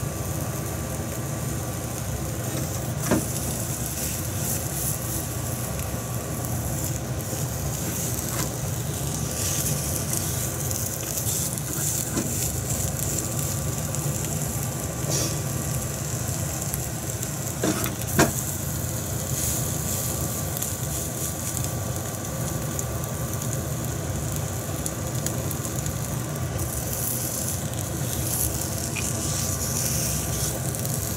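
Egg sizzling steadily in an oiled rectangular tamagoyaki pan over a gas flame, with a steady low rushing noise underneath. Two sharp taps stand out, about three seconds in and about eighteen seconds in.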